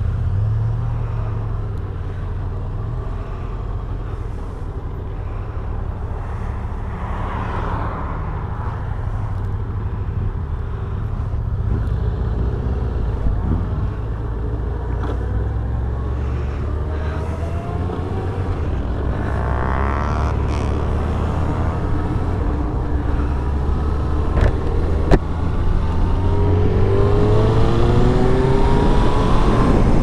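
1999 Suzuki Hayabusa's inline-four engine heard from the rider's seat, running at low revs while moving off and cruising, with a few short knocks. Near the end it grows louder and its pitch rises as the bike accelerates.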